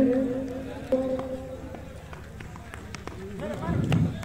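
A man's voice, drawn out and trailing off, then a second held note about a second in. Faint voices rise near the end.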